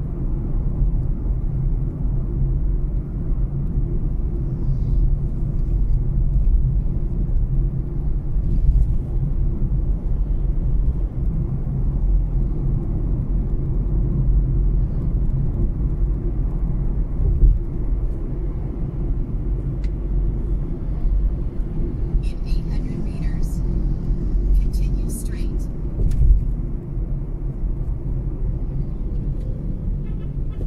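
Steady low rumble of road and engine noise inside a Mazda3's cabin while driving, with a few brief high-pitched chirps or clicks between about 22 and 26 seconds in.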